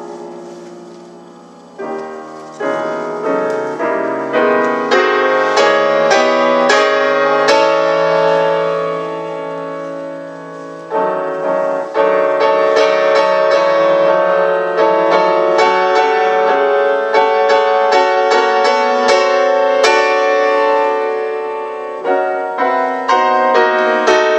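Grand piano playing a solo passage of struck chords and notes, the sound fading for a moment about ten seconds in before the playing picks up again.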